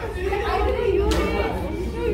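Speech only: a group of girls chatting over one another.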